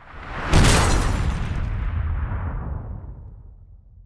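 Logo sting sound effect: a short swelling build-up into a single heavy boom that rings out and fades away over about three seconds.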